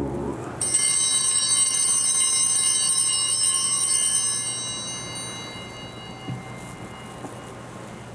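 An altar bell rung at the elevation of the host during the consecration. It starts about half a second in, rings steadily for a few seconds and then dies away.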